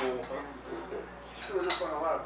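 Dinner-table conversation with plates and cutlery clinking, a few short metallic or glassy clinks ringing over the voices.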